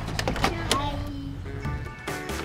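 A van's sliding side door rolling shut and latching with a few sharp clunks, over background music.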